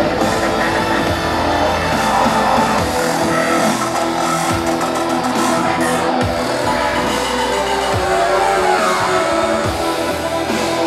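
Live band playing electronic rock: synthesizers over drums and guitar, loud and dense, with deep bass sweeps that fall in pitch every second or two.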